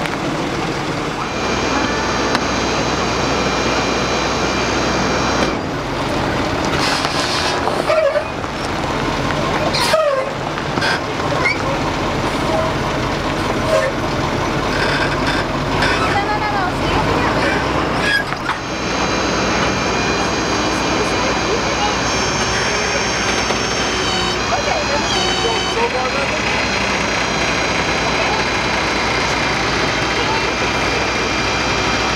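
Truck engine running steadily while under way on a tow, its note shifting about five seconds in and again about eighteen seconds in.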